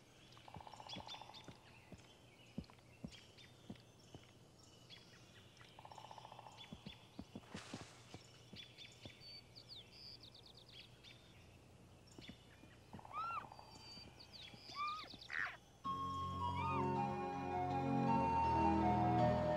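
Elk hooves clicking and stepping through dry sagebrush, with short bird chirps and a few curved rising-and-falling calls. Music comes in near the end.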